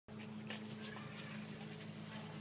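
A dog growling low and steady, a faint continuous rumble under the play.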